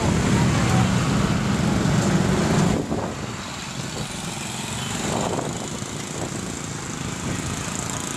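Street traffic passing close by: a vehicle's engine rumble is loudest for the first three seconds, then drops to lighter, steady traffic with motorcycles going past.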